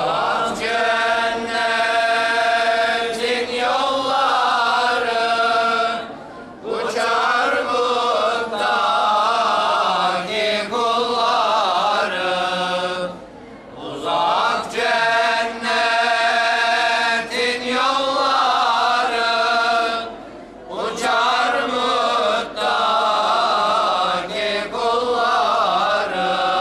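Religious chanting by voices, sung in long phrases of about six to seven seconds with short breaks between them.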